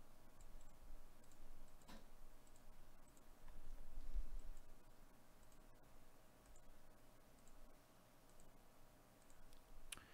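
Faint computer mouse clicks, repeated every second or so, as a web page's randomize button is clicked over and over. A low rumble swells about four seconds in.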